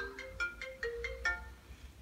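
Mobile phone ringtone: a quick marimba-like melody of short notes that stops about a second and a half in, as the incoming call is answered.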